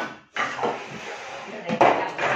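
A Thermomix's stainless-steel mixing bowl being handled and set back into the machine's base: about a second of rustling, scraping noise, then a loud clunk near the end.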